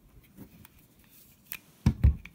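A metal 1911 pistol being handled and shifted on a wooden table: a few faint clicks, then a sharp knock near the end.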